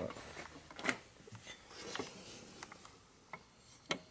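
Steel shift-fork alignment tool being set onto the shift forks of a Harley-Davidson four-speed transmission, giving a few light metal clicks and taps with faint rubbing of handling in between; the sharpest click comes just before the end.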